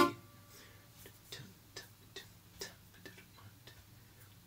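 An acoustic guitar note dies away at the start, then faint, light ticks come about two a second.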